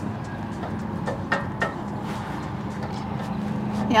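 Pliers clicking a few times against the metal frame of an RV's folding entry steps as a bolt is tightened, about a second in, over a steady low hum.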